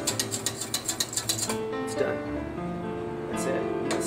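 Metal utensil beating gravy in a stainless saucepan, a fast even clicking about seven strikes a second, which stops about a second and a half in. After that, guitar music plays.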